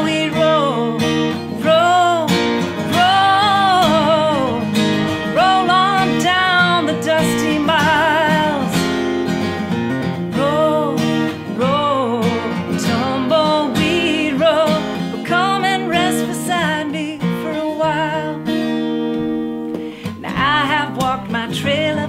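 A woman singing a country-style chorus to her own strummed acoustic guitar. Near the end the voice pauses briefly over the guitar, then the singing resumes.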